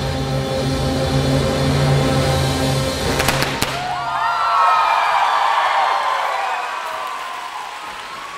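Symphonic wind band holding a loud final chord, cut through by a quick cluster of sharp pops from confetti cannons about three seconds in. The band then stops and many voices cheer and whoop.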